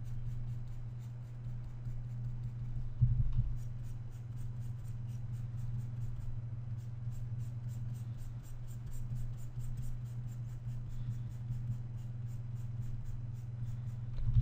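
Faint, rapid scratchy rubbing strokes, like a computer mouse pushed back and forth across a desk while erasing, over a steady low electrical hum. One thump about three seconds in.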